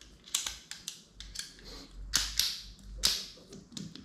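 Camera rig parts being handled and fitted together: a string of sharp clicks and clacks, the loudest about two to three seconds in, with dull low bumps beneath them.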